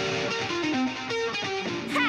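Electric guitar playing a fast riff, a run of notes that steps downward and climbs back up.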